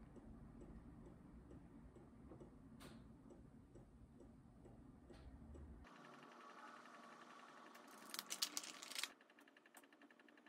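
Small plastic makeup compact and brush being handled: a quick cluster of light clicks and taps about eight seconds in, over otherwise near-silent room tone with a faint tick or two.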